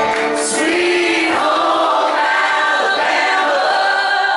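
Live band with acoustic and electric guitars playing while many voices sing along together.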